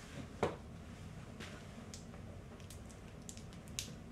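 Faint, sharp clicks of a spoon against a small ceramic ramekin as melted white chocolate is stirred, a few scattered taps with one louder knock about half a second in.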